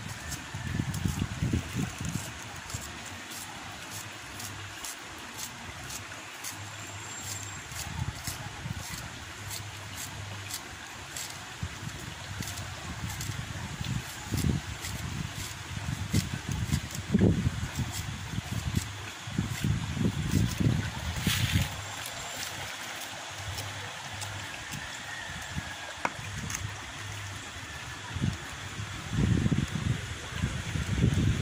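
Steady rush of a shallow river running over rocks, with irregular low rumbles and thumps over it.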